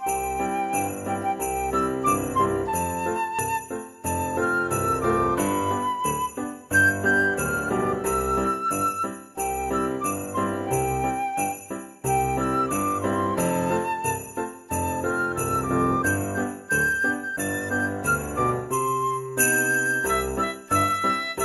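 Upbeat Christmas background music with jingle bells shaken on a steady beat over a bright melody and a bass line.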